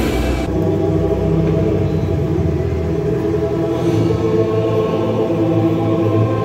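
Live band music through the arena PA breaks off about half a second in. What remains is a dark, sustained drone of held low chords, like a keyboard pad under the drama.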